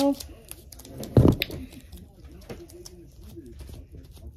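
A strip of masking tape being handled and dabbed onto a fabric blanket to lift lint: light rustles and taps, with one dull thump about a second in.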